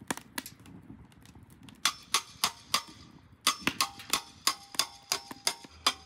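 A rapid series of sharp metallic taps, about three a second, each with a brief ringing tone. They come in two runs, with a short pause between them just after halfway.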